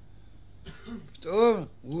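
An old man's voice: after a pause of about a second, one drawn-out syllable that rises and falls in pitch, then the start of the next one near the end.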